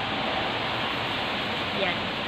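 Steady, even hiss from an electric oven with bacon-wrapped rice rolls cooking inside under its glowing heating elements.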